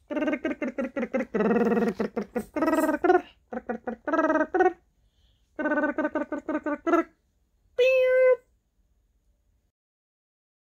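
A woman singing a cat's wordless theme song in quick, repeated syllables, run after run for about seven seconds, then one short held note about eight seconds in.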